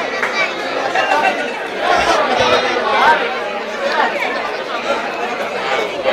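Several people talking at once: steady, overlapping chatter of many voices with no single speaker standing out.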